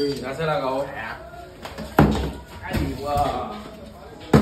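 A small plastic water bottle is flipped and lands on a plastic table with one sharp clack about two seconds in, followed by a smaller knock; excited voices sound around it.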